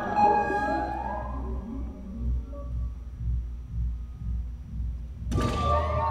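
Solo double bass bowed in a contemporary piece. Gliding high tones slide about in the first second or so, then give way to a low pulsing rumble, and a sudden brighter bowed entry with sliding pitches comes near the end.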